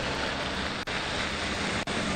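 A steady, even rushing noise on a live outdoor news link, with faint clicks about once a second.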